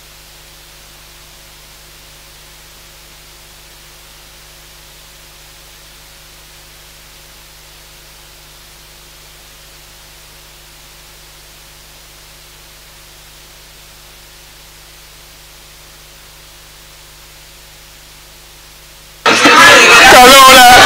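Steady electrical hum with faint hiss from the chamber's microphone sound system while no one speaks. It is level throughout and cuts in and out abruptly at the edges of the speech.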